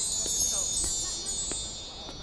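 Chimes ringing: a shimmer of many high, bright tones that slowly fade away, with a few faint light clinks.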